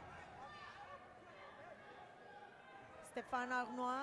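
Faint voices and chatter of a boxing-arena crowd, then a loud voice held on a steady pitch starting a little after three seconds in.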